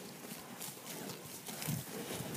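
Dairy cow grazing close by, tearing off mouthfuls of grass in a quick, irregular series of crisp rips. A louder low thump comes near the end.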